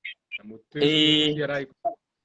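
A man's voice: a few short syllables, then one long vowel held at a steady pitch for under a second, chant-like.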